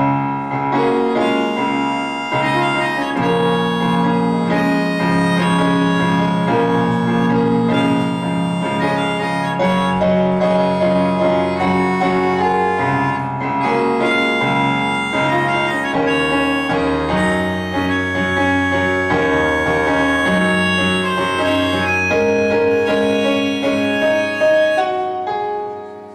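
A clarinet-like woodwind plays a held, flowing melody over chords from a Roland digital keyboard set to a piano sound, in a live instrumental duet.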